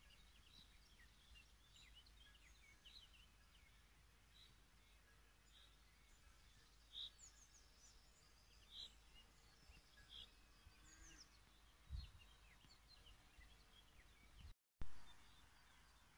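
Faint birdsong in quiet countryside: scattered short chirps and calls from several birds over a low background hiss. There is a low thump about twelve seconds in and a brief louder noise near the end.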